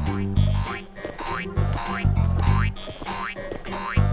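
Cartoon pogo-stick sound effects: a springy rising 'boing' with each bounce, repeating several times, over bouncy background music with a steady bass line.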